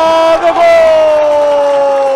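A man's voice in one long held shout, a football commentator stretching out his goal call on a single vowel that slowly falls in pitch, with a crowd cheering beneath.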